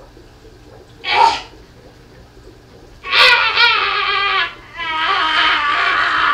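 A woman's exaggerated, quavering whimpering wail, in two long drawn-out cries from about three seconds in, after a short breathy grunt about a second in, as she strains to come down out of a handstand on the pole.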